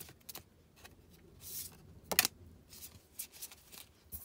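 Matte-finish tarot cards being shuffled by hand: soft, scattered rustles and light clicks, with one sharper snap of the cards about two seconds in.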